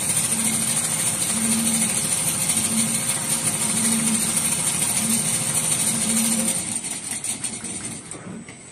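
Richpeace two-head perforation sewing machine running: a steady dense mechanical clatter with a low hum that pulses about once a second. The sound falls away near the end.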